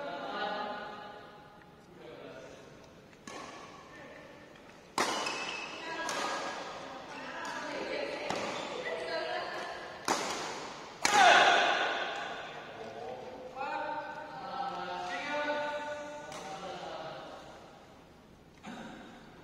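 Badminton racket strings hitting a shuttlecock during a rally. The sharp hits are spaced a second or more apart and echo in a large hall, the loudest about two-thirds of the way through. Players' voices call between the shots.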